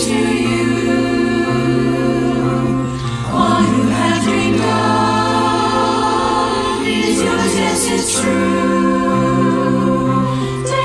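Virtual choir of high school voices, recorded separately and mixed together, singing held chords in harmony. The phrase breaks briefly about three seconds in and a new phrase begins.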